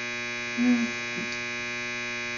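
Steady electrical mains hum: a buzz with many evenly spaced overtones.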